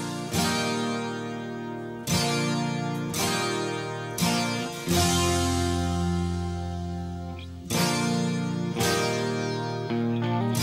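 Music: strummed guitar chords, each struck and left to ring out, a new chord every one to three seconds.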